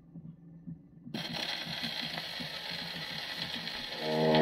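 Needle of a Victrola VV-1-90 acoustic phonograph's reproducer set down on a spinning 78 rpm record about a second in. It is followed by the steady hiss and crackle of the needle running in the lead-in groove. Faint low knocks repeat about four times a second throughout.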